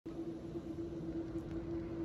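A steady mid-pitched hum over a low, even rumble of background noise.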